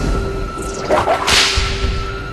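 A sudden swishing whoosh about a second in, peaking sharply, laid over a film score with a steady held tone.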